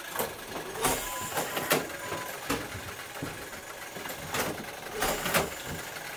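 Clockwork mechanism of an antique fire alarm telegraph automatic repeater running, giving off sharp mechanical clicks and clacks at uneven intervals over a low whirring.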